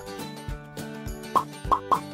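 Light background music on a steady held chord, with three quick rising cartoon 'plop' sound effects near the end.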